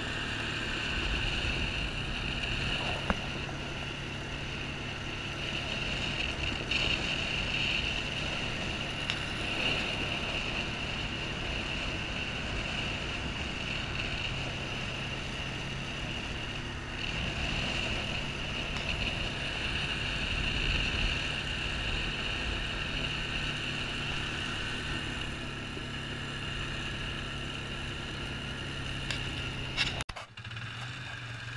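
A small vehicle's engine runs steadily as it rides along a gravel road, under a constant hiss of road and wind noise. There is one sharp click about three seconds in.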